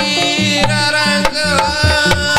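Live dangdut band playing: kendang hand-drum strokes and a bass line under a sustained melody.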